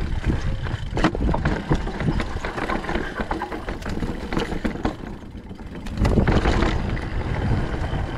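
Mountain bike rolling over a rocky dirt trail: tyre crunch and many small clicks and rattles from the bike, under a low rumble of wind on the microphone. The rumble gets louder for about a second around six seconds in.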